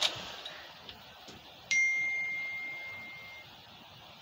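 A short click, then about two seconds in a single bright ding that rings on and fades away over nearly two seconds.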